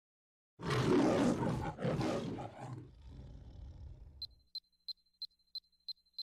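A lion roaring twice, the MGM studio-logo roar, trailing off over a few seconds. Then short high electronic beeps begin, about three a second, ticking off a digital countdown.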